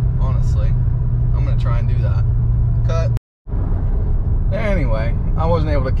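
Steady low hum of an Audi S3's engine and tyres heard inside the cabin while cruising at about 60 mph in fourth gear. The sound cuts out briefly about three seconds in.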